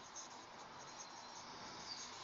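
Faint scratching of a felt-tip marker writing on a whiteboard.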